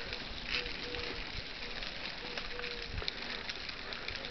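Footsteps and rustling camera-handling noise from someone walking up a paved road, with a few faint short tones.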